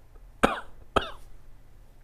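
A man coughs twice into his fist: two short, sharp coughs about half a second apart.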